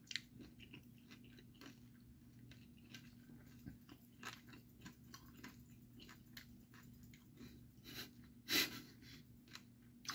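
A man chewing a mouthful of Nerds Rope, a gummy candy rope coated in small crunchy candies: faint, irregular wet chewing with small crunches. One louder brief sound comes about eight and a half seconds in.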